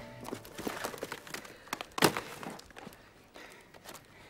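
Scattered light knocks and scuffs of small objects being picked up from a cobblestone pavement and handled beside a cardboard box, with one sharper knock about two seconds in.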